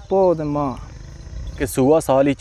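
Beetal goats bleating in a herd: one call in the first second with a gently falling pitch, then another starting near the end.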